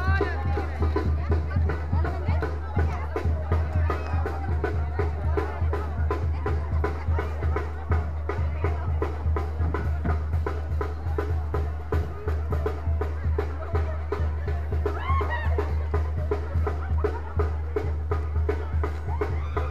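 Live band music with a steady drum beat, over crowd chatter.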